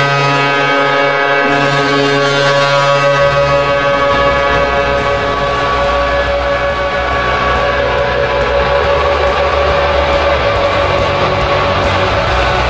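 Charlottetown Islanders' hockey goal horn sounding one long, steady, loud blast. Music comes in low beneath it about three seconds in.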